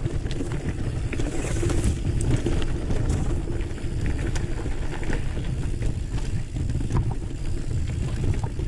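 Mountain bike rolling along a dirt and gravel singletrack, picked up by the on-board camera as a steady rough rumble of tyres and wind, with scattered small clicks and rattles from the bike and stones.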